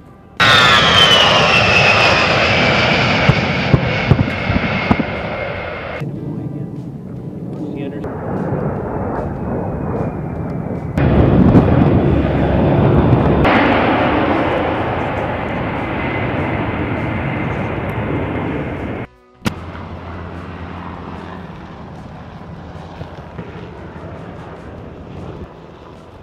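A-10 Thunderbolt II twin turbofan jet engines, the loud noise of low passes with a high whine that falls in pitch as the aircraft goes by. The sound breaks off and changes abruptly several times, about 6, 11 and 19 seconds in.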